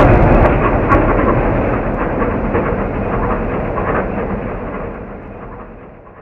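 An explosion sound effect: a loud, deep rumble with scattered crackles that slowly dies away, fading out near the end.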